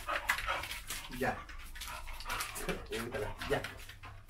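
A dog whining in short, repeated whimpers.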